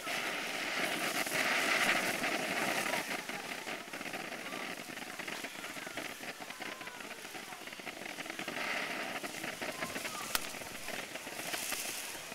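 Midnight Magic ground fountain firework burning: a steady hiss of spraying sparks, full of small crackles. It grows louder about two seconds in and again near nine seconds, with one sharp pop about ten seconds in.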